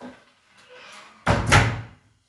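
Wooden wardrobe doors pushed shut, closing with two quick bangs close together.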